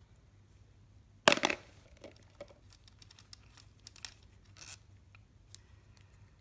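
A single sharp metallic clink about a second in, as a steel valve-body bolt is set down on the transmission case, followed by faint scattered clicks and rustling from gloved hands handling the bolts.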